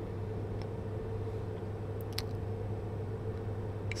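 Steady low electrical-type hum with a fainter higher steady tone, the background noise under the commentary, with a couple of faint short clicks about two seconds in.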